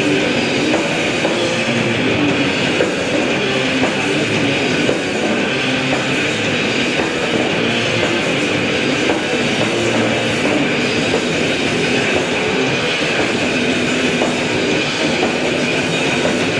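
Heavy metal band playing live, with distorted electric guitars and drums in a loud, unbroken wall of sound, picked up from the audience.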